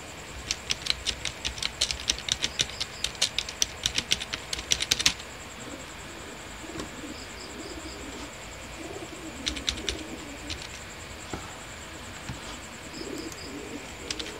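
Typing on a computer keyboard: a quick run of keystrokes for about five seconds, then a few more key clicks around the tenth second. A faint, steady, high insect trill runs underneath.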